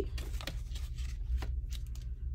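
Hands moving paper dollar bills and cards on a tabletop: light paper rustling and a few soft clicks over a low steady hum.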